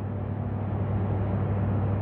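Steady low hum with a constant hiss from running commercial kitchen machinery.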